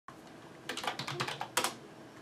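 Typing on a computer keyboard: a quick run of key clicks starting under a second in, ending with a louder pair of strokes.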